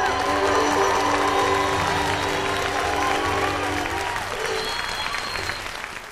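Audience applauding and cheering at the end of a bluegrass song, with a few of the band's notes still held under it; the applause fades near the end.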